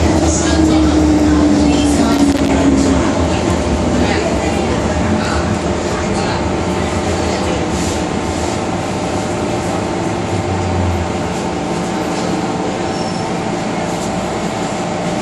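MTR M-Train electric multiple unit heard from inside the car, running through a tunnel and slowing for a station: a whine falling in pitch over the first few seconds over a steady rumble, with a low hum that stops about eleven seconds in as the train eases to a halt.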